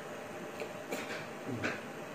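Steady faint room noise with two brief soft sounds, about a second in and again near the end, from a person signing with his hands.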